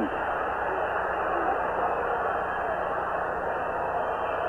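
Steady hubbub of a huge stadium crowd, heard through old band-limited television sound.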